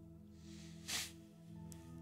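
Soft background music of steady held chords, with one short hiss about a second in.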